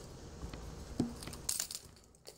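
Faint handling sounds with light metallic clicks and clinks as steel needle-nose pliers work a treble hook out of a thumb. The sharpest clicks come about a second and a half in.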